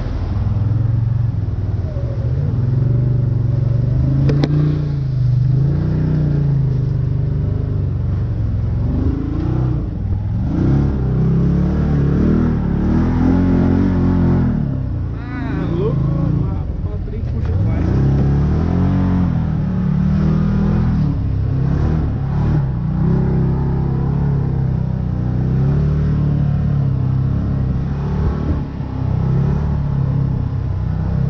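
Can-Am Maverick X3's turbocharged three-cylinder engine heard from the cockpit while driving a dirt trail, its pitch rising and falling over and over as the throttle is worked.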